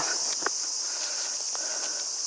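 Steady high-pitched chorus of summer insects shrilling, with a few faint clicks and rustles of steps in dry leaf litter.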